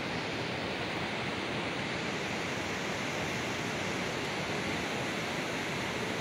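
Steady rushing of river water: an even, unbroken hiss with no distinct splashes or other events.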